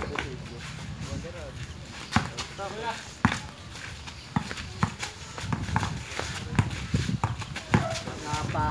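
A basketball bouncing on a concrete court amid players' rubber sandals slapping and scuffing: a run of sharp, irregular knocks, more frequent in the second half.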